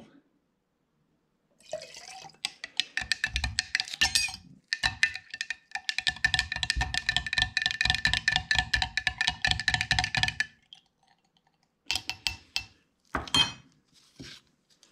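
A metal spoon stirring dye into shellac in a glass jar, clinking rapidly against the glass with a steady ringing tone, in two spells of about three and six seconds. A few sharp clicks follow near the end.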